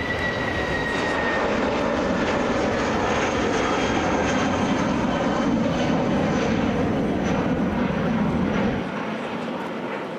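The twin jet engines of a Jetstar Airbus A320-family airliner running at takeoff thrust as it climbs out: a steady, loud jet noise with faint whining tones, one falling slightly in pitch in the first second. The deep low end of the noise drops away near the end.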